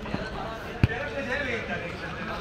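A single sharp thud of a football being kicked, less than a second in, over faint voices in a large hall.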